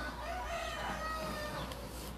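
A rooster crowing once, faintly: one long call of about a second and a half.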